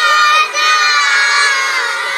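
A group of young children shouting together in unison, many voices held in long calls with a brief break about half a second in.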